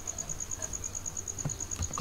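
Faint, high insect chirping, an even pulse about nine times a second, over quiet room background, with two faint clicks near the end.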